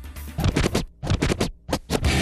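TV sports transition sting: a choppy stutter of electronic music with record-scratch effects, starting about half a second in and cutting in and out in quick bursts, dropping out briefly just before the full music sets in.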